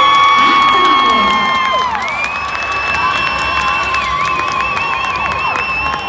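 A crowd of young cheerleaders screaming and cheering, celebrating a first-place team just announced. Several long high-pitched shrieks are held over the crowd noise, one breaking into a warbling trill about four seconds in.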